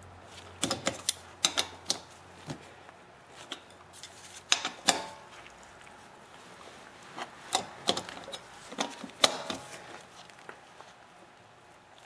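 Metal clicks and clinks from a socket on a breaker bar as the wheel nuts are tightened, in short runs of clicks a second or two apart with quiet between.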